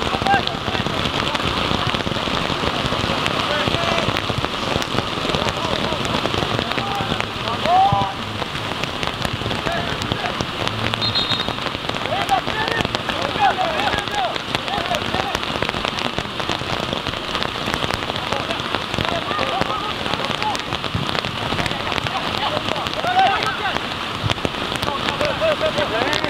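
Steady rain falling on an umbrella held just over the microphone: an even hiss thick with the small ticks of individual drops. Faint shouts are heard now and then.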